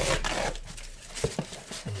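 Packaging being cut and torn open with a hand cutter: a rasping tear at the start that fades within half a second, then a few light knocks.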